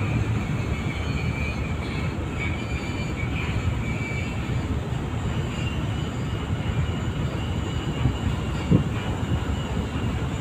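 Steady low rumble of a car ferry under way, heard from its deck: engine drone mixed with the rush of water along the hull.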